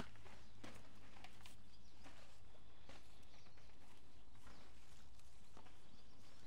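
Soft scattered rustles, scrapes and light taps of hands working potting soil and handling tomato plants in plastic pots, over a steady low hum.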